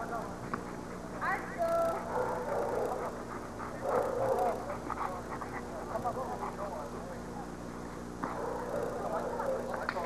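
Dogs barking now and then over the background chatter of people.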